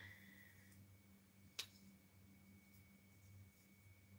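Near silence: room tone with a faint steady hum and a thin high tone, broken by one short click about a second and a half in.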